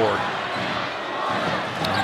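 Basketball being dribbled on a hardwood court, over steady arena crowd noise.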